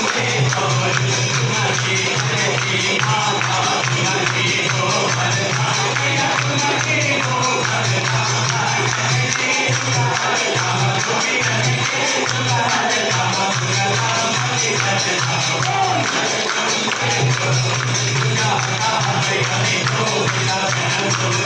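Devotional Hindu temple music: a crowd of devotees singing together over continuous rhythmic jingling percussion, with a low steady hum beneath.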